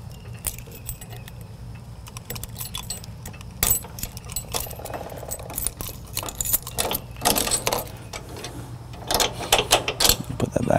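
Metal clinking and rattling of trailer coupler hardware (pin, coupler lock and chains) being handled and worked loose at the hitch ball, in scattered small clicks with busier bursts near the middle and toward the end, over a steady low hum.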